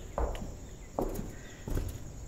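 Footsteps of a person walking at a steady pace, three steps roughly three-quarters of a second apart, the last one lighter.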